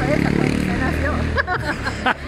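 A motor vehicle's engine running close by on the street, a low steady hum that fades about a second and a half in, with voices over it.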